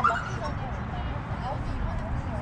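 A dog gives one short, sharp bark at the very start, over a steady low rumble.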